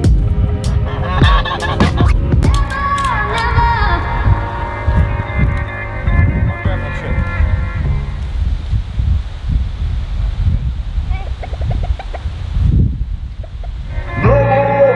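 Wind rumbling on the microphone, with poultry calling over it during the first eight or so seconds, which stops abruptly.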